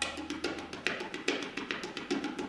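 Tabla played solo: a fast run of crisp finger strokes on the treble drum, with stronger strokes about two or three times a second and lighter taps between. A low bass resonance hums under the first part.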